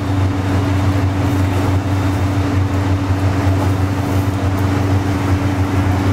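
Loud, steady machine hum in a commercial fryer kitchen: a low drone with a fainter higher tone above it, unchanging throughout.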